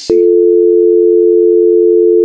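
A telephone tone on a call being placed: one loud, steady electronic tone of two pitches sounding together, starting just after the call is announced.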